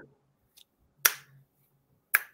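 Finger snap: one sharp snap about a second in, part of a slow, even snapping beat, with a faint click about half a second in.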